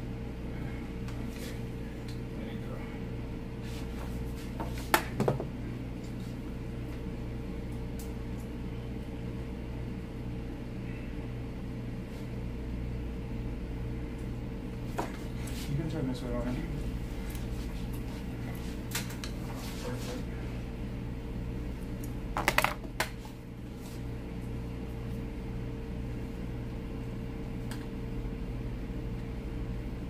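A steady electrical hum runs throughout, with a few sharp clicks or taps about five, fifteen and twenty-two seconds in.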